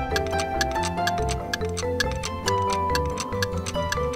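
Light background music with a steady clock-like ticking over it, a countdown-timer cue for thinking time.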